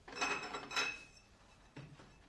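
Glass bottles clinking and rattling against each other in a refrigerator door shelf as a hand pulls them out, a clatter with a bright ringing that lasts about a second, then a soft knock near the end.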